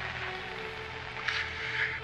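A steady low hum under a faint held higher tone, with a soft brief hiss just past halfway.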